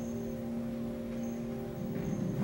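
Soft droning background of several steady low tones, with brief faint high chime-like pings that recur every second or so.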